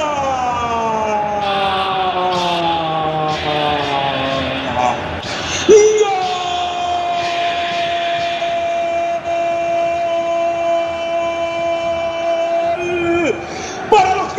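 A football commentator's drawn-out goal cry, one held "gooool". It first slides slowly down in pitch for about five seconds. Then, after a brief loud burst, it is held at one steady pitch for about seven more seconds and drops off just before the end.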